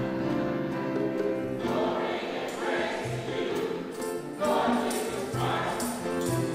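Church choir singing the Gospel acclamation with instrumental accompaniment; the singing grows fuller about two seconds in, and short crisp percussion strokes join in from about four seconds on.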